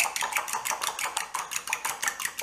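Eggs being beaten by hand in a glass bowl: a metal utensil clinking rapidly against the glass, about seven strokes a second.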